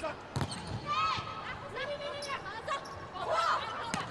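Indoor volleyball rally: the ball is struck with a sharp smack about half a second in and again near the end, with short shoe squeaks on the court in between, over arena crowd noise.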